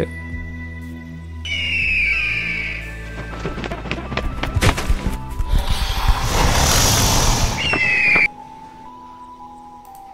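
Creature sound effects from a dinosaur green-screen clip, over a low steady music drone: a high screech, a run of thuds, a long noisy burst and a second screech. About eight seconds in they cut off suddenly, leaving only the quieter drone.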